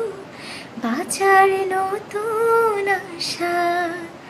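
A woman singing a Bengali song unaccompanied, holding long notes in phrases with short breaks between them.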